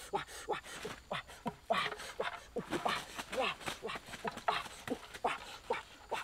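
Domestic chicken squawking and clucking in short, repeated calls, several each second, while being handled.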